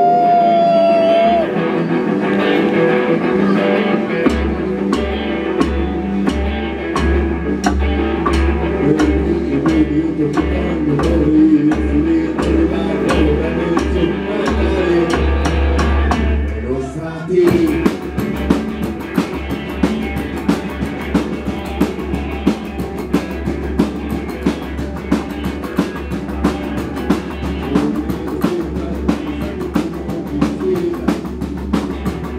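Live psychobilly band playing: electric guitar, slapped upright bass and drum kit. After a short break about 17 seconds in, the full band comes back with a fast, steady drum beat.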